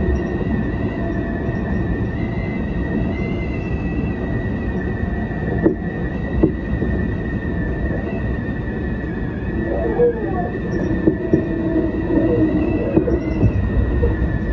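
Tobu 10050-series electric train running along the track, heard from the cab: a steady rumble of wheels on rail with a thin, steady high whine over it. Two sharp clicks from the wheels passing rail joints come midway.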